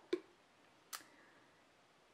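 A quiet pause with one short, sharp click about a second in and a fainter tick just before it.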